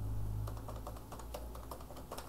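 Typing on a computer keyboard: a quick, irregular run of light keystrokes over a low, steady hum.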